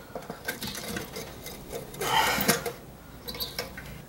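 Light clicks and knocks of hands handling a rice cooker's opened base and metal parts, with a louder scraping, rustling burst about two seconds in.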